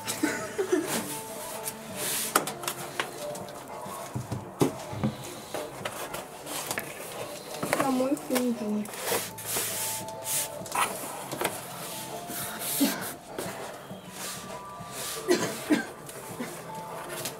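Stiff cardboard tapping, scraping and rustling in short sharp sounds as a life-size cardboard standee is handled and folded so it will stand, with low voices and faint music underneath.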